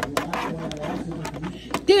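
Light clicks and taps of plastic action figures being handled in a toy wrestling ring, under a low, unclear voice; clear speech begins near the end.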